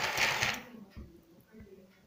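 Small battery motor and plastic gears of a ChiChi Love interactive plush Chihuahua toy whirring as the toy moves in response to a voice command. The whir fades out about half a second in, and a soft knock follows about a second in.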